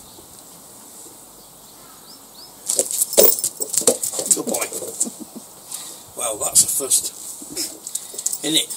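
A black Labrador's claws clicking and scuffing on paving slabs as it noses a ball about: a quick, busy run of clicks and scrapes starting about three seconds in.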